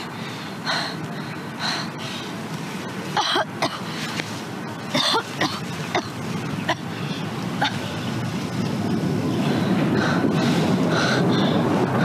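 A young woman crying, with short irregular sobs, sniffs and catches of breath. A steady hiss swells beneath them in the second half.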